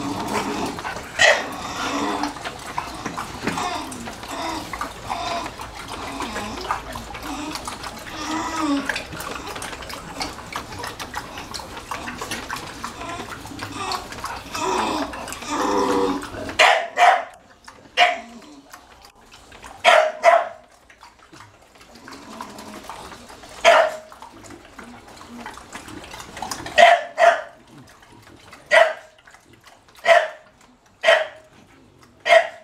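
English bulldogs barking: single sharp barks every second or few seconds through the second half. In the first half a steady rush of water from a hose runs under the dogs' noises and stops suddenly past the middle.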